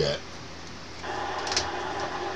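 CB radio receiver hiss and static on an open channel; about a second in the noise steps up louder as another station keys up, with one brief crackle. The noise is the heavy atmospheric static the operators blame on solar activity and poor propagation.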